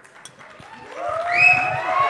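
Audience cheering and applauding, swelling loudly about a second in, with many voices calling out together.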